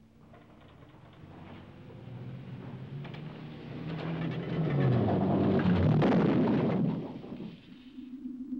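Test car's engine accelerating as it approaches, growing steadily louder and rising in pitch, then cutting off suddenly near the end.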